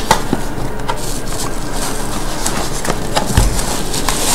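A cardboard box being handled and opened by hand: scattered light knocks and scrapes of the cardboard, with a dull thump about three and a half seconds in, over a steady background hiss.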